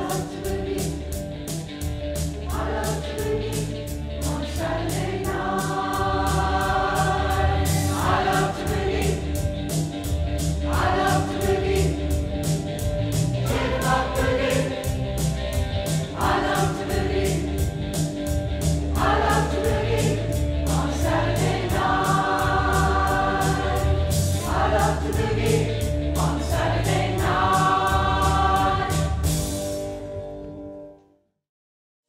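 Mixed community choir of women's and men's voices singing a song in harmony, over a steady pulsing bass accompaniment.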